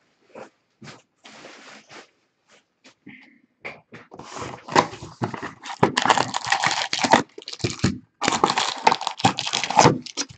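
A trading-card hobby box being opened: a few light cardboard taps and scrapes, then from about four seconds in a loud, dense crinkling and rustling as the wrapped card packs are pulled out of the box's cardboard insert.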